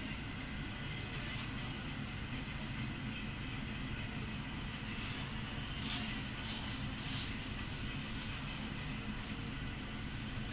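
A steady low mechanical rumble runs throughout, with a few short soft scrapes around the middle as a long knife slides through a raw salmon trout fillet on a plastic cutting board.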